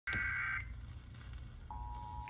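End of an Emergency Alert System SAME data burst, a steady high two-tone warble lasting about half a second, followed after a pause by the start of the EAS two-tone attention signal near the end, heard through a radio receiver's speaker with a low hum underneath. Together these mark the start of a relayed flash flood warning broadcast.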